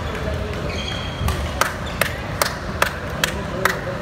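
A series of seven sharp, evenly spaced taps, about two and a half a second, over the background chatter of a large hall.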